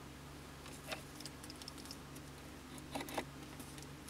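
A few light clicks and taps from a pointed metal tool and fingers handling a small plastic bag of gold solder sheet, one about a second in and a couple near three seconds, over a steady low hum.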